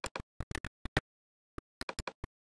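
Computer mouse clicking: about a dozen short, sharp clicks spread unevenly over two seconds, some in quick pairs, with dead silence between.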